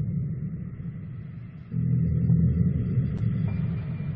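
A deep rumbling drone, like a dark ambient soundtrack, that swells, eases off about a second in and swells again just under two seconds in, with a faint steady high tone above it.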